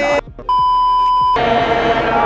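A single flat electronic censor bleep, one steady pitch just under a second long, that starts and stops abruptly. Background music plays before and after it.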